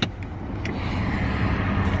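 Car running, heard from inside the cabin: a steady low hum with an even rushing noise that slowly grows louder, after a sharp click at the start.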